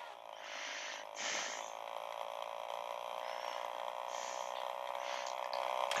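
The battery-powered electric motor of a Schuco Elektro Porsche 917 toy car running in neutral, a steady even hum, switched on by opening the door. A couple of brief rustles of handling come about a second in.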